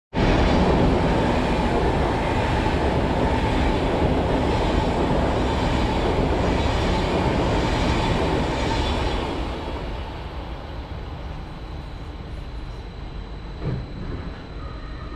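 SBB double-deck passenger train passing close by at speed: a loud, steady rush of wheels on rails and moving air that cuts in abruptly, then falls away after about nine seconds as the last cars pass. A faint, steady high tone lingers as it recedes.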